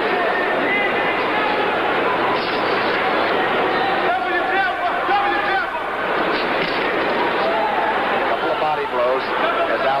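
Arena crowd at a boxing match: a steady hubbub of many voices, with a few single voices rising out of it about four to six seconds in and again near the end.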